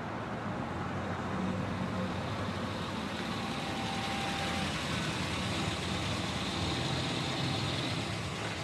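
A boxy 4x4 SUV's engine and tyres as it drives up a paved road and comes to a stop close by. The sound grows louder over the first few seconds, then holds steady as it idles.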